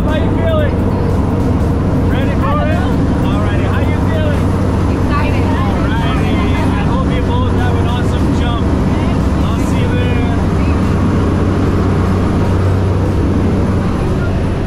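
Propeller airplane's engine droning steadily inside the cabin, with people's voices and laughter over it.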